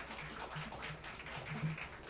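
Faint room sound of a live club recording: a low murmur with a few scattered small ticks and no band playing clearly.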